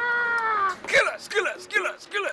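A voice calling out one long, drawn-out call that slowly falls in pitch, then a few short quick syllables: a shouted greeting.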